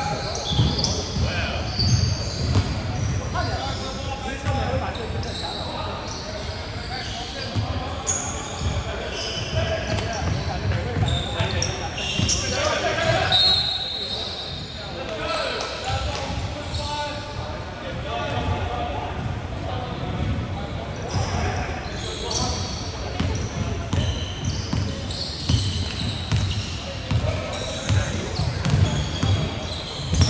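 Basketball game play on an indoor hardwood court: the ball bouncing repeatedly and short high squeaks of sneakers, echoing in a large gym.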